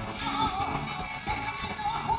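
A live blues band playing on electric guitar, bass guitar and drums, with a lead melody wavering up and down over a steady beat.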